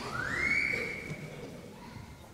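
A high, whistle-like tone that slides up quickly and then holds steady for about a second and a half before fading away.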